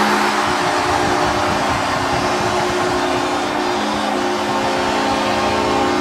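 Arena crowd cheering with an ice-hockey goal horn sounding a steady, held chord, signalling a home-team goal.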